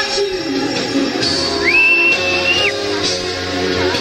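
Live band music in a large arena. In the middle, a high note slides up and is held for about a second.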